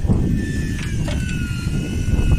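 A steady low rumble of wind on the microphone and the boat's noise. About a second in, a thin motor whine joins it, sinking slightly in pitch: an electric fishing reel winding in line with a fish on.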